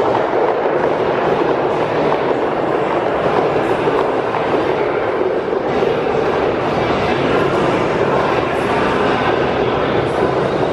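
Heavy battle ropes whipped in continuous rapid waves, slapping and rattling against a rubber gym floor.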